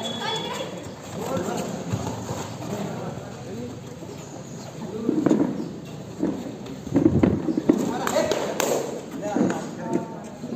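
Kabaddi players' feet stamping and slapping on the foam mat during a raid, mixed with shouted voices; the loudest thuds and shouts come about halfway through and again about two seconds later.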